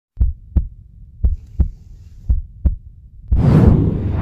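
Heartbeat sound effect: three double thumps, each pair about a second apart. About three seconds in, a loud swell of intro music rises.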